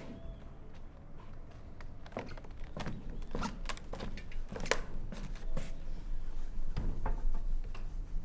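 Footsteps and irregular knocks on a wooden floor, a string of sharp taps spread over several seconds, over a low rumble.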